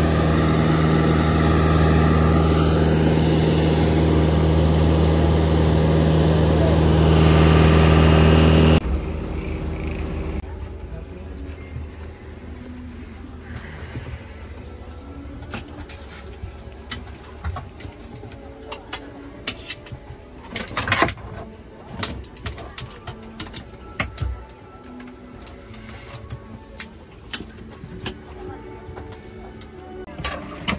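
Loud, steady engine drone on the airport ramp beside a parked ATR 72-600 turboprop, cutting off suddenly about nine seconds in. After that comes the quieter hum of the aircraft cabin with scattered clicks and knocks from boarding.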